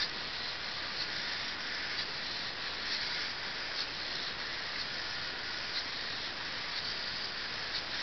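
Hexapod robot's servos running with a steady hiss-like whir as the robot rotates in place, with faint ticks about once a second as its legs step.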